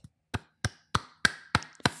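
One person clapping his hands: about six evenly spaced claps, roughly three a second.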